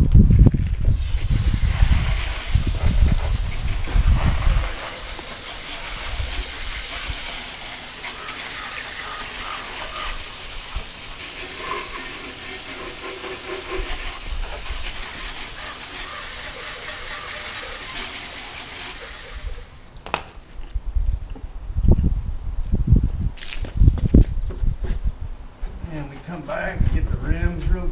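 Garden hose spray nozzle spraying water in a steady hiss, starting about a second in and cutting off a few seconds before the end. Uneven low rumbling comes at the start and again after the spray stops.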